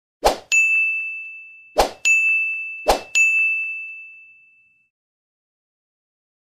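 Sound effects of an animated subscribe end screen: three times a short click followed by a bright ringing ding that fades over about a second, the last one ringing longest.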